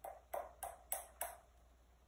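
A deck of cards being shuffled by hand: about five sharp card taps, roughly a third of a second apart, stopping about a second and a half in.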